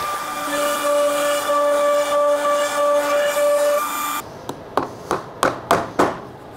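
A sideways-mounted Makita trim router spinning at high speed, a loud steady whine with a hiss, which cuts off abruptly about four seconds in. Then about five sharp taps from a small mallet striking wood.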